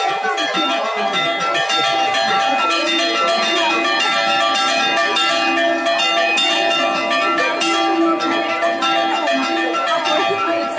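Church bells in an Orthodox bell gable rung by hand, struck continuously so that their ringing tones overlap without a break.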